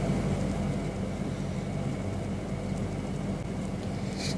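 Steady low hum with an even hiss of background noise, no distinct events.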